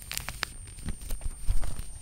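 A folded sheet of brown packing paper being opened out by hand, with crisp crackles in the first second and a few low thumps later on as the paper is flattened onto the cloth-covered table.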